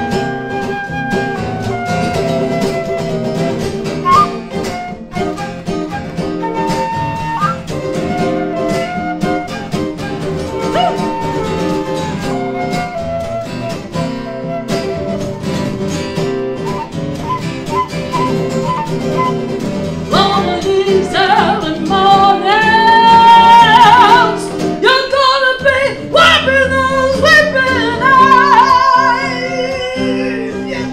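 Live acoustic blues: two acoustic guitars strumming with a lead melody over them. The lead grows louder and bends in pitch in the last third.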